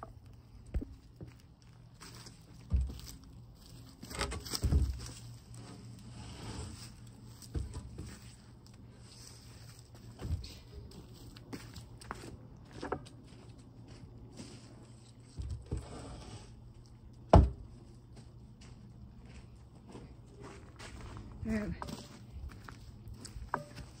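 Scattered scrapes and knocks from working on a log being peeled with a drawknife, with one sharp knock about two-thirds of the way through.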